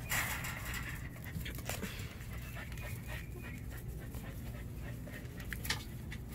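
An animal panting, with a couple of light knocks near the end.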